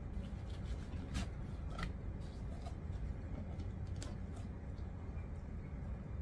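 A person eating pizza: faint, scattered soft clicks and mouth sounds of chewing over a steady low hum.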